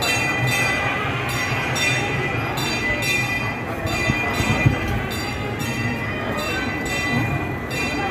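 A temple bell rung over and over, a ringing stroke about every two-thirds of a second, over the murmur of a crowd.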